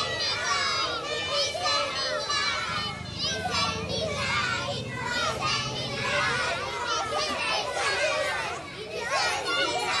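A group of young schoolchildren chattering at once, many high voices overlapping.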